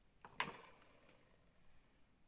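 Two quick plastic clicks close together about half a second in, the second louder, then faint handling noises: a pressed-powder highlighter compact being handled and opened.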